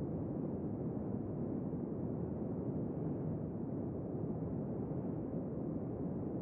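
Steady, muffled rushing of wind and water over open sea, with no separate wave breaks or other events.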